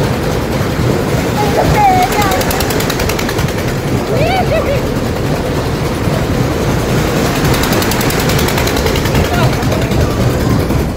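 Loud, steady rattling rush of noise while riding a moving fairground ride, the air and motion buffeting the phone's microphone. A few short rising and falling vocal cries break through it, about two and four seconds in.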